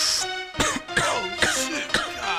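Opening of a 1990s hip hop track: a hiss fades out, then a beat comes in with drum hits about half a second in, overlaid by cough-like vocal sounds.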